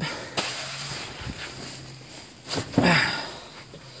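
Rustling of the ice shanty's fabric and knocks from its fold-up seat as it is flipped up and moved about, with a sharp click about half a second in. A louder rustle comes near three seconds in, with a short grunt.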